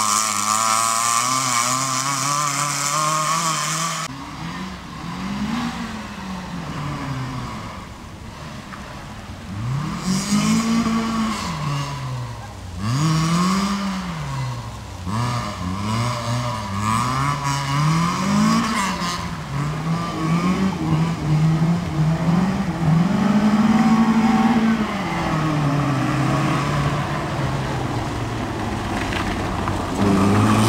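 FSO Polonez Caro rally car's engine being driven hard through tight turns, revved up and dropped back over and over, its pitch rising and falling every second or two.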